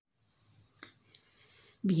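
Quiet room with a couple of faint, brief clicks, then a woman starts speaking near the end.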